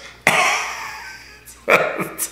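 A man laughing: a sudden breathy burst of laughter that fades over about a second, then a second, voiced laugh starting near the end.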